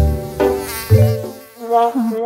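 Cartoon sound effect of a housefly buzzing, pulsing in a few short swells during the first second and then fading.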